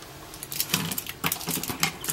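Plastic pens clicking against each other and tapping on a tabletop as they are laid out in a row: a quick, irregular run of small clicks that starts about half a second in.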